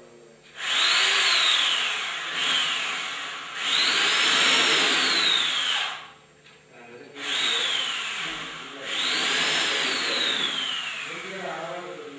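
Electric power drill run in four bursts with short pauses between; the motor whines up quickly, then its pitch falls away as it winds down after each run.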